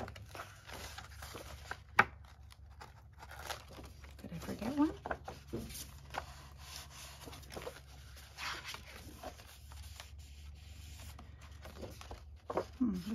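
Paper pages of a large hardcover book being turned and handled, with soft rustles and swishes and a sharp tap about two seconds in.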